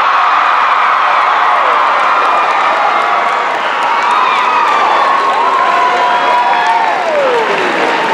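Theatre audience applauding and cheering loudly, with high whoops and shouts sliding up and down over the steady clapping.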